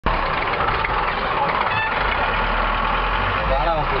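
Engine of an open-sided vehicle running, a steady low rumble throughout. A voice comes in just before the end.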